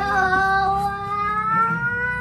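A child's long, drawn-out "ooooh", one held note that rises slowly in pitch.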